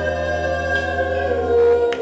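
A woman singing karaoke into a microphone, holding one long note, with a short click just before the end.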